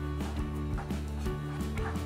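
Background music with steady held notes; under it, a few faint soft taps of a kitchen knife cutting through sliced bread against a wooden cutting board.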